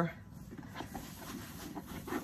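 A white wipe rubbing back and forth over a Louis Vuitton Monogram coated-canvas bag, wiping off saddle soap: a faint, uneven scuffing.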